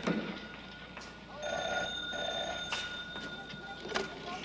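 Old desk telephone's bell ringing: one ring lasting just over a second, starting about a second and a half in, with a short knock at the start.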